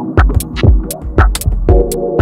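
Dub techno playing: a steady kick drum about twice a second with hi-hat ticks between and a held synth chord over a deep bass.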